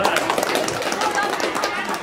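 A small group applauding: many hands clapping in a dense, irregular patter.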